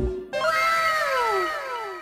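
A short edited-in sound effect: several tones sliding downward together for about a second and a half, fading out near the end.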